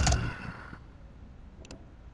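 Faint clicks of a computer keyboard being typed on, a couple of short taps about one and a half seconds in, over quiet room tone.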